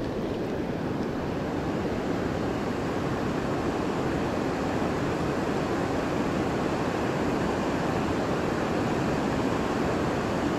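Steady rush of river water flowing below a dam, an even hiss of current with no breaks.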